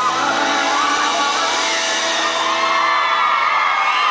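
Amplified live band music from the stage with the concert crowd whooping and screaming over it.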